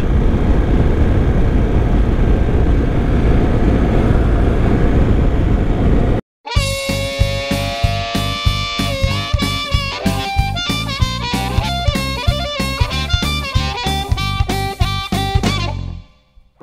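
Wind rush and road noise from a BMW GS Adventure motorcycle riding at speed, which cuts off abruptly about six seconds in. After a brief silence, background music starts, with plucked guitar and a steady beat.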